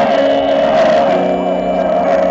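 Live post-rock band playing through a loud PA, with amplified electric guitars holding sustained, droning notes. A low note comes in about a second in.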